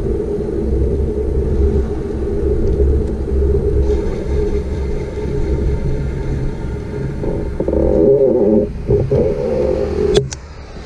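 Wind buffeting the microphone of a bicycle-mounted action camera while riding, a continuous low rumble mixed with tyre and road noise, easing briefly near the end.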